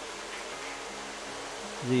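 Several electric toy trains running around a layout: a steady buzzing hum from their motors and wheels on the track. A man's voice starts near the end.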